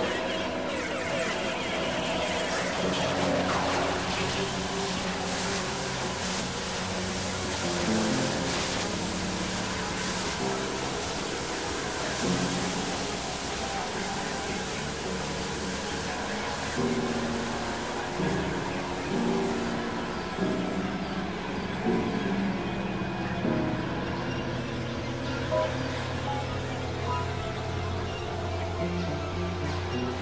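Experimental electronic synthesizer music: layered drones and held tones that shift in pitch every second or two, over a steady noisy hiss that thins out in the highs after about twenty seconds.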